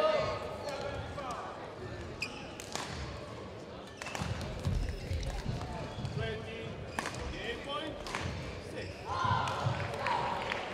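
Badminton rally: a shuttlecock struck back and forth by rackets in a string of short, sharp hits, with shoes squeaking and feet thudding on the court. Players' voices are heard at the start and again near the end as the point is won.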